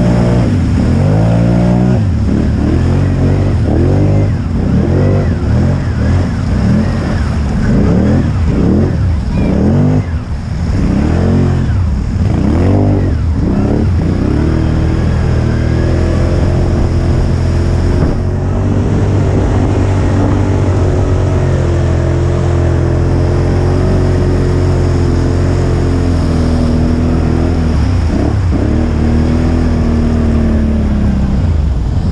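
Can-Am ATV engine revving hard under load through deep mud water, its pitch rising and falling again and again for the first several seconds, then holding a steadier pitch.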